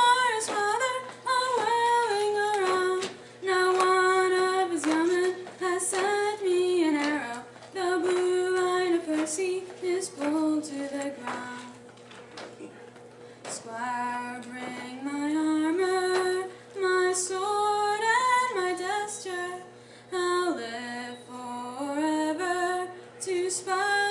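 A woman's solo voice singing a narrative ballad unaccompanied, in a steady melody of sung phrases with short breaths between them.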